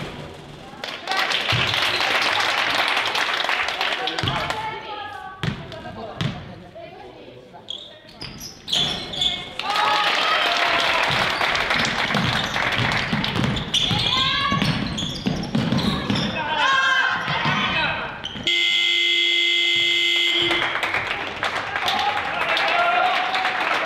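Basketball game in a sports hall: a ball bouncing with sharp thuds, and players and spectators calling out. Near the end a scoreboard horn sounds steadily for about two seconds.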